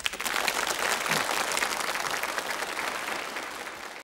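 Audience applause breaking out suddenly at the close of a song, a dense crackle of many hands clapping that eases slightly near the end.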